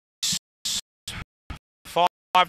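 A race caller's voice broken up by repeated audio dropouts, each scrap cut off after a fraction of a second with silence between, and two short bursts of hiss near the start.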